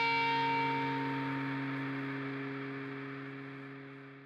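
The final electric guitar chord of an outsider-metal song left ringing, fading slowly and evenly with no new strikes.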